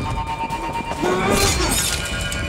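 A scuffle with something breaking and shattering about a second and a half in, over tense background music.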